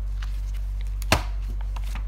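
A stack of paper sheets handled on a wooden desk, with one sharp knock about a second in as it is set down, plus a few faint taps. A steady low electrical hum runs underneath.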